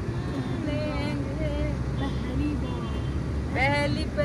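Steady road and engine rumble heard from inside a moving car, with people talking faintly over it and a brief rising exclamation near the end.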